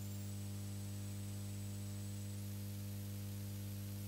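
Steady electrical mains hum with a constant hiss on the recording, and a thin high-pitched whine that jumps higher about two seconds in.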